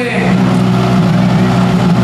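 Škoda Fabia R5 rally car's engine idling steadily with an even low hum.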